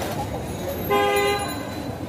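A vehicle horn gives one steady toot of about half a second in the middle, over continuous street noise.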